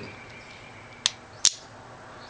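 Two sharp metallic clicks about half a second apart, the second louder: the hammer of a Colt Frontier Scout .22 single-action revolver being thumbed back and clicking into its notches.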